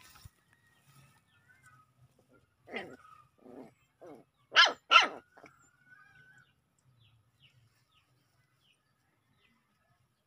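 Puppies barking in play: a few short, lower barks build to two loud, sharp yaps about half a second apart, followed by a brief thin whine.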